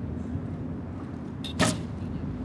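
A recurve bow loosing an arrow: one short, sharp snap of the string about one and a half seconds in, over a steady low outdoor rumble.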